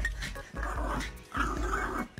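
Small dog growling in two short bursts, over background music with a steady bass beat.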